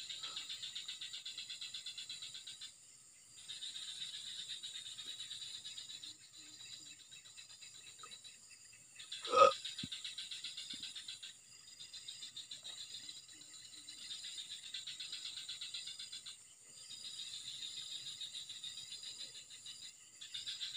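A chorus of small calling animals: rapid, high-pitched pulsing trills in bouts of two to three seconds with short gaps between them. One brief, loud, voice-like sound comes about nine seconds in.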